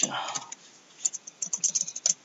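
Computer keyboard keys clicking: a quick run of keystrokes in the second half as a terminal command is deleted and retyped.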